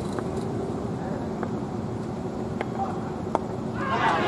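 Open-air cricket-ground ambience: a steady low hum with a few faint clicks and a single sharp knock about three seconds in. Players then burst into a loud shouted appeal right at the end.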